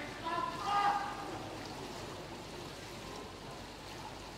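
Swimming pool hall ambience: a steady wash of reverberant background noise, with a brief voice in the first second.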